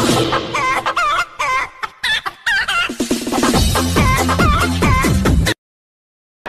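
Chicken clucking calls in a novelty electronic music track. At first the clucks repeat a few times a second on their own. About halfway through, a heavy bass beat comes in under them, and the track cuts off suddenly shortly before the end.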